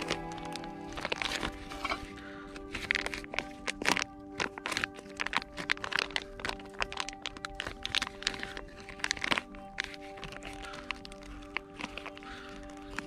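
A plastic packet of paneer crackling and crinkling as it is handled and opened, a busy run of sharp crackles and clicks, over steady background music.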